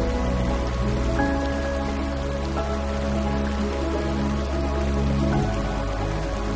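Slow background music with sustained chords over a steady rush of water from a rocky stream's rapids.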